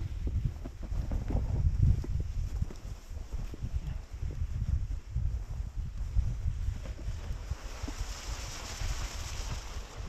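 Wind buffeting the microphone of a camera riding on a moving sled, in uneven low gusts. A hiss of the sled sliding over snow builds up in the last couple of seconds.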